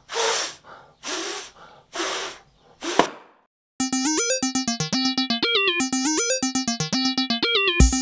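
Four evenly spaced breathy mouth sounds from a man, followed by a click and a brief silence. Then the intro of an '80s-style synthesizer song starts, with a quick stepping keyboard melody, and drum-machine beats come in near the end.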